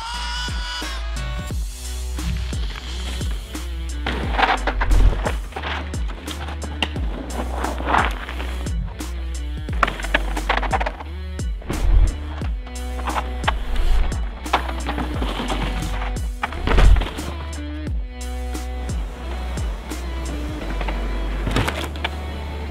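Music with a steady bass line over mountain bike riding: knobby tyres rolling and skidding on rock slab and dirt, with several loud sudden crunches, the biggest about twelve and seventeen seconds in.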